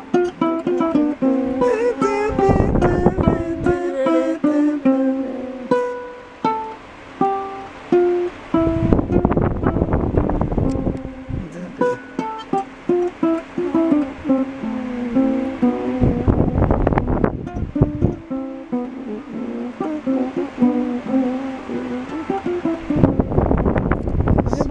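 A seperewa, the Akan harp-lute, played solo by plucking its strings with the fingers: a steady stream of bright plucked notes in repeating, mostly falling runs. Four times a brief, louder rush of noise breaks over the notes, roughly every six or seven seconds.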